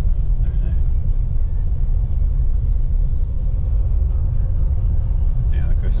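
Steady low rumble of a Nissan Navara NP300 pickup on the move, heard from inside the cabin.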